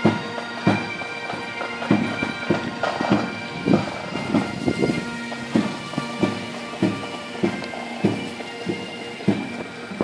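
Bagpipes playing a march over steady drones, with a regular low beat about every two-thirds of a second.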